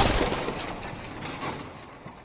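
A logo-animation sound effect of tumbling blocks: one loud crashing hit that fades over about three seconds, with scattered clattering knocks as it dies away.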